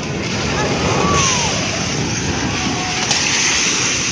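A multi-storey building collapsing in an earthquake: a loud, sustained rumble of falling concrete and masonry.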